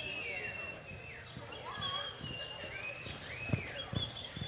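Horse loping on soft arena dirt, its hoofbeats landing as dull thuds, the strongest two near the end. Birds chirp throughout with quick, sweeping high calls.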